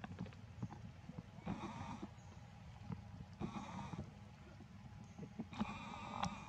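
Infant macaque crying in three bleating wails, each about half a second long and roughly two seconds apart.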